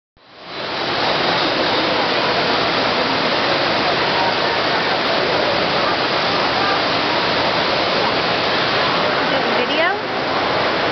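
Steady rush of falling water from a waterfall, fading in over the first second and then holding even.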